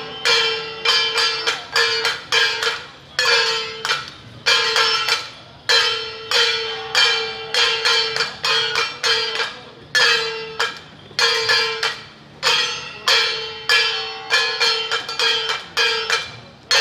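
Metal percussion of a Taiwanese Jiajiang troupe's band, gong and cymbal type, struck in an uneven rhythm. There are about two strikes a second, with quick runs of three or four, and each sharp strike rings on one steady tone and then fades.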